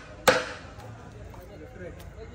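A whole coconut struck hard against a wooden platform edge to crack it open: one sharp knock a little after the start, ringing briefly.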